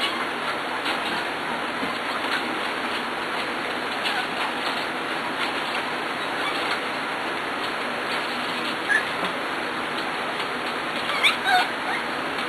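Seven-week-old Pembroke Welsh corgi puppies playing, with scattered small clicks and a few short high squeaks over a steady hiss. The loudest squeaks come as a quick pair near the end.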